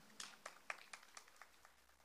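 Faint, scattered handclaps from a few listeners, a quick irregular patter that dies away after about a second and a half.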